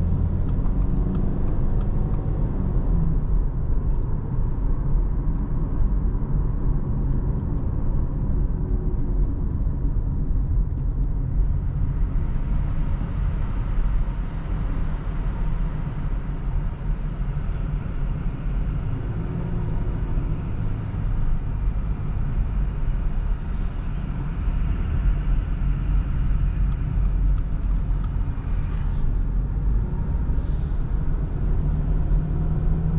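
Subaru Forester e-BOXER mild-hybrid on the move: a steady low rumble of engine and road noise. A faint engine hum fades in the first few seconds, and from about twelve seconds in the tyre and wind hiss grows louder.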